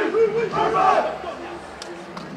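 Men's volleyball team shouting a chant together in a huddle, many voices in a regular rhythm, ending about a second in. Quieter voices follow, with a couple of sharp smacks.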